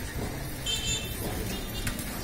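Street traffic rumbling steadily, with a brief high-pitched vehicle toot about two-thirds of a second in and a sharp click near the end.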